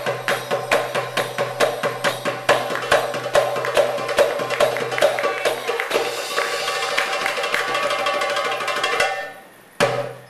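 Goblet drum played in a fast solo rhythm: sharp, evenly spaced strokes for about six seconds, then a rapid roll that stops suddenly, with one last accent hit near the end.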